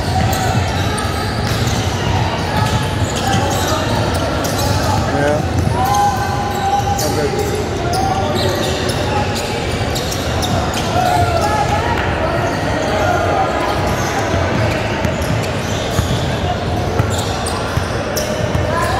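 A basketball bouncing on a hardwood gym floor as it is dribbled, with indistinct voices echoing around the large hall.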